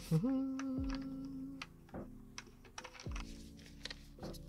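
A string of short clicks and taps from two Soonwell MT1 tube lights being handled and fitted together end to end with their connector.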